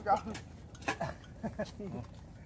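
A few light clinks of chopsticks and utensils against metal bowls and trays as people eat, mixed with quiet talk and a laugh.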